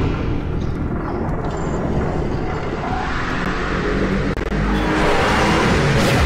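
Action soundtrack of an animated episode: a steady low rumble, like engines or jet thrusters, with music underneath, swelling a little louder near the end.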